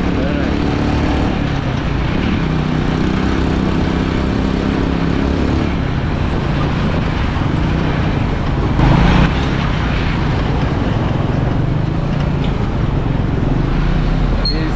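Small motorcycle engine of a sidecar tricycle running under way, its hum shifting in pitch now and then over road and wind noise. A short louder burst comes about nine seconds in.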